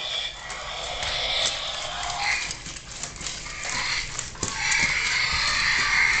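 Robot dinosaur toys giving electronic roaring growls through their small speakers, in two long stretches with a pause of about two seconds between them. A few sharp clicks of the plastic toys knocking on the tile floor fall in the pause.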